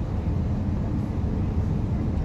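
Moving regional passenger train heard from inside the carriage: a steady low rumble of running noise, with no separate clicks or knocks.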